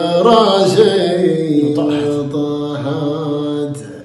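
A man chanting a shaila, a Gulf Arabic sung poem, drawing out the end of a line in a long wavering held note that fades out near the end.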